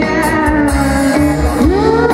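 Live rock band playing, with electric guitar through an amplifier to the fore and a note sliding upward near the end.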